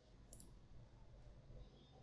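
Near silence: faint room tone, with one faint short click about a third of a second in.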